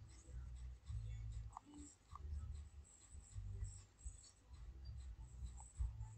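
Faint stylus strokes on a tablet while words are handwritten: short, irregular bursts of low rubbing with light scratches, about one stroke-group a second.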